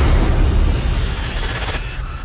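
A sound-effect boom from a flaming logo animation: a sudden deep blast with a hissing rush that fades away over about two seconds.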